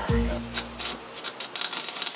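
Stick welding arc struck on steel plate, starting about a second and a half in as a dense crackling sizzle. It follows a low hum with a steady tone in the first second.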